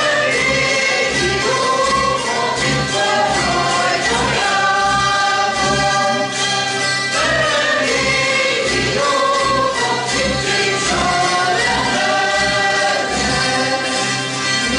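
Hungarian zither (citera) ensemble strumming a folk tune in a steady rhythm, with voices singing the melody in unison along with the strings.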